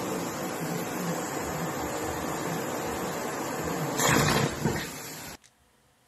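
Vacuum cleaner running with its hose nozzle over a plate of food. About four seconds in it gives a louder, rougher surge as the breakfast is sucked up into the hose, then the sound stops abruptly.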